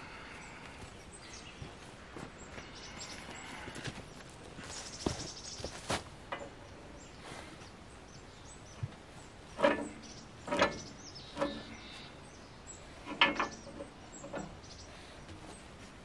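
Scattered steel knocks and clanks at a tractor's three-point hitch as a back blade's arm is levered into line with its hitch pin. The knocks are sparse at first and come in two louder groups in the second half.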